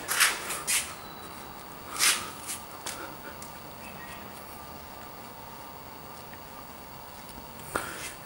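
Trigger spray bottle of waterless car-wash spray, three short hissing spritzes in the first two seconds, then faint rubbing of a microfiber towel on the car's paint.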